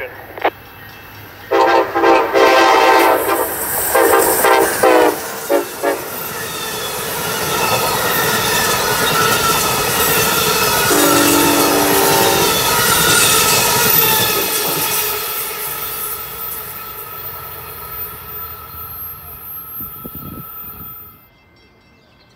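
Amtrak train horn sounding a long blast, a shorter one and a couple of quick toots on approach. Then the train passes at speed: the roar and rattle of wheels on rail builds, peaks with thin high squealing tones, and fades, cutting off near the end.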